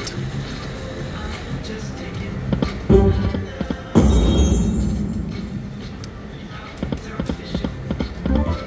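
Poker machine game sounds as a spin plays out: the reels run and stop, with a sharp hit about three seconds in and a louder sound about four seconds in that fades away over a couple of seconds as the Respin symbol lands.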